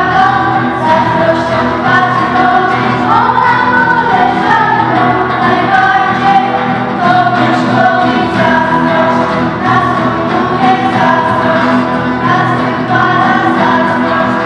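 A girls' vocal ensemble singing a song together into microphones.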